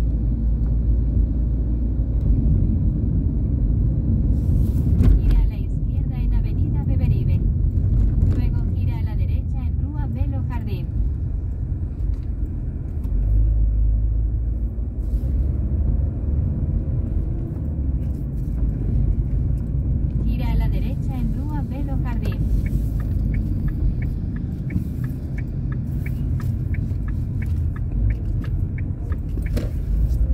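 Car interior: steady low engine and road rumble of a car driving slowly through city streets, with voices talking at times. Near the end a fast, regular ticking runs for several seconds.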